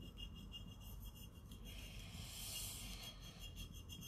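Fingertips rubbing the damp paper backing off an image transfer on a painted glass bottle, a faint scratchy rubbing that grows a little stronger about two seconds in.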